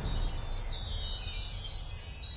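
Shimmering, chime-like sparkle sound effect: a dense high tinkling that slowly sinks a little in pitch over a faint low rumble.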